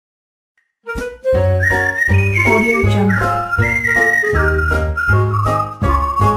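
Short intro jingle: a high whistle-like melody sliding up and down over a pulsing bass beat, starting about a second in.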